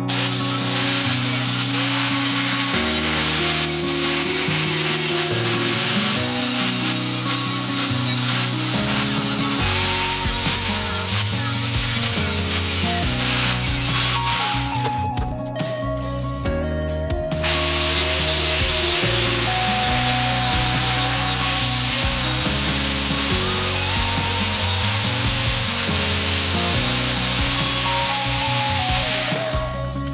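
Power tool grinding a knife blank cut from a marble-cutting saw disc, in two runs: it stops about halfway through for a few seconds, then starts again with a steady high whine and stops near the end. Background music plays throughout.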